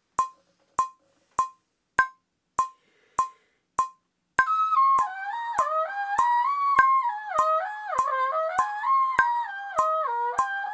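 Metronome clicking at about 100 beats a minute, every fourth click higher in pitch. About four and a half seconds in, a muted trumpet comes in over the clicks, playing a fast run of eighth-note phrases that begin on a high note and wind downward.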